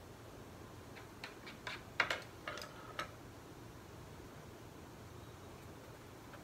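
A quick run of light clicks and taps over about two seconds, the loudest in the middle, from paintbrushes being handled and put down while one brush is swapped for another off the canvas.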